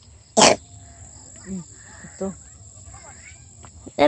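Crickets trilling steadily in a rural outdoor background. A single short, loud burst of noise comes about half a second in, and a couple of brief faint voice sounds come later.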